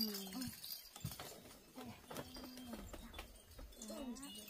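A few short wordless hums or murmurs from a woman's voice, with soft knocks and rustling as a person shifts and lies down on a mattress over a bamboo floor.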